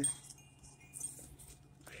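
Quiet pause with faint rustling of houseplant leaves as a hand brushes through them, over a low steady hum.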